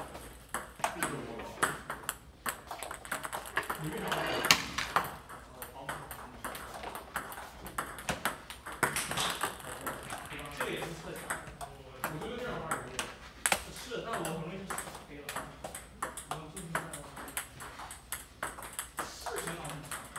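Table tennis balls clicking off paddles and the table, many quick hits in an irregular run, with one sharper, louder hit about four and a half seconds in.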